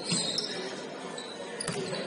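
Basketball being dribbled on a hardwood gym floor: a couple of sharp bounces, one just after the start and another about a second and a half later, echoing in the large hall.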